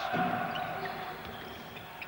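Basketball game sound from the court and crowd, fading over the two seconds, under a steady thin hum carried by the old broadcast recording.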